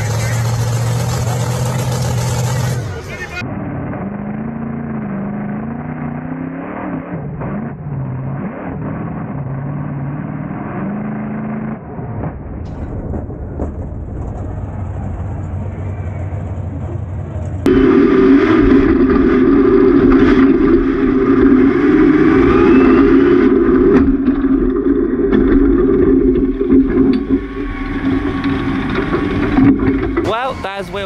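Monster truck engine running, heard over several cuts; it becomes much louder and steady about two-thirds of the way through, as if heard close up from the cab.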